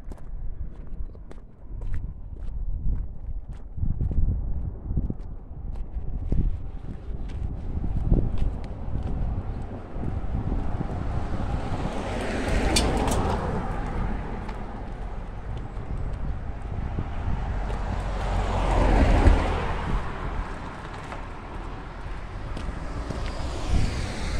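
Two cars passing on the road, one about halfway through and another about three-quarters through, each swelling up and fading away. Under them are footsteps on the pavement and a low wind rumble on the microphone.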